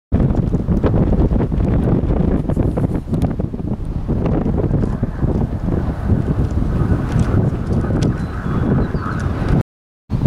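Wind blowing across the camera microphone: a loud, steady low rush that flutters with the gusts. It cuts off abruptly just before the end.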